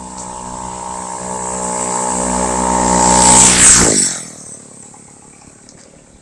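Two-stroke chainsaw engine on a homemade scooter running steadily as it approaches, growing louder, then passing close by about four seconds in, its pitch dropping sharply as it goes away and fades.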